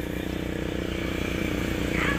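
A motor vehicle's engine running with a steady low pulse, growing gradually louder as it draws near.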